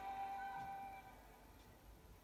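A folk band's instrumental intro ending on one long held note, which fades away about a second in and leaves a near-quiet pause.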